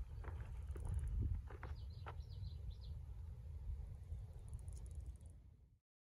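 Low wind rumble on the microphone with the crunch of footsteps on a dirt trail. A bird gives a short run of high chirps about two seconds in. The sound cuts off suddenly just before the end.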